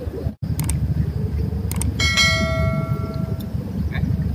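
Subscribe-button animation sound effect: a couple of quick mouse clicks, then a bell ding that rings out and fades over about a second and a half. Under it runs a steady low background rumble.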